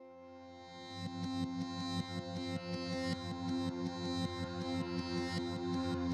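Ambient background music on synthesizer: held chords under a quick, evenly repeating note pattern, starting softly and building over the first second.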